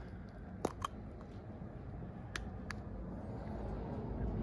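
Small hand-handling noises on a motorcycle clutch master cylinder reservoir as its cover and rubber diaphragm come off: a few light clicks, two close together near the start and two more past the middle, over faint background hiss.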